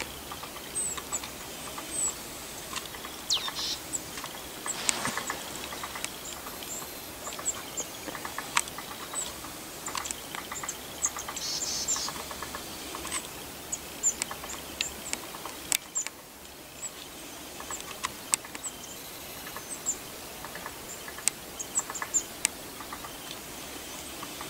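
Outdoor ambience of faint, high, short chirps of small birds, with scattered sharp clicks and crackles over a steady hiss.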